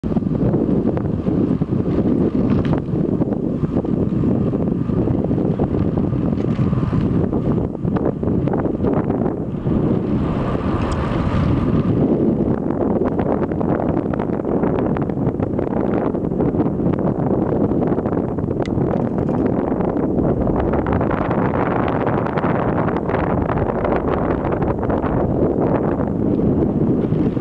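Wind buffeting the microphone as it moves along a road: a loud, steady rumbling noise with no let-up.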